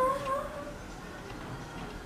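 A child's voice holding one long whining note, slightly rising, that breaks off about half a second in.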